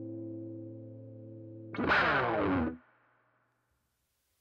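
Electric guitar played through effects pedals into an amp: a held chord fades, then about two seconds in a louder note is struck and slides down in pitch before the sound cuts off abruptly.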